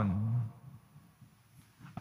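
A man's reading voice trailing off with a low, falling pitch at the end of a sentence for about half a second, then a near-silent pause.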